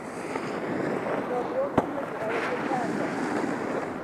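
Wind rushing over the camera microphone, a steady noise, with faint distant voices and one sharp click a little under two seconds in.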